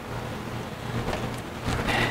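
Steady background noise with a low, even hum underneath and no distinct event.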